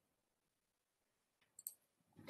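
Near silence, then a computer mouse clicking twice in quick succession about one and a half seconds in: a right-click that opens the presentation's context menu.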